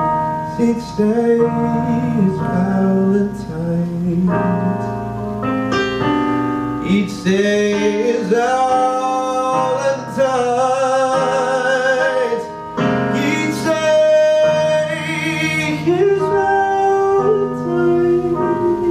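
A man singing while playing piano-voiced chords on a Roland Fantom-S keyboard workstation. The voice glides between notes and holds a long wavering note midway through.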